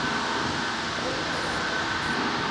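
Steady background noise of a working shop: an even hiss with a faint, constant high whine running under it.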